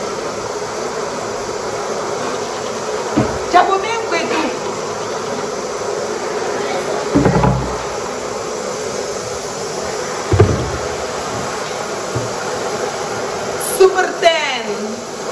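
A steady buzzing hiss with a faint hum, broken by three dull knocks on the kitchen countertop about three, seven and ten seconds in. A child makes brief vocal sounds about four seconds in.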